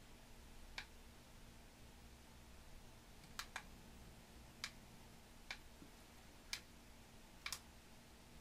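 Near silence broken by short, sharp clicks at irregular intervals, about one a second, from a PSB7 ghost box sweeping the FM band and played through a karaoke machine's speaker.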